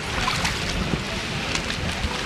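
Wind rumbling on the microphone over swimming-pool water lapping, with a few faint splashes near the end.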